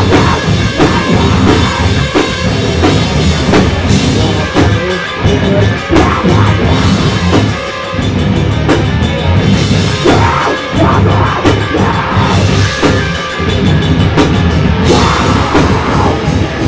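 Live metalcore band playing loud and fast: distorted electric guitars, bass guitar and drums, with dense crashing cymbals through most of it.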